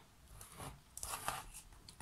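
Faint scraping and rustling of a frosted Perspex sheet slid over a paper template on a tabletop, a few short scrapes.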